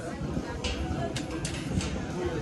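Quiet background music over outdoor ambience, with a few short hissy sounds in the second half.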